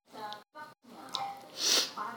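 A woman sneezes once, loudly, near the end. Before it there are faint voice sounds, and the audio cuts out completely twice for a moment.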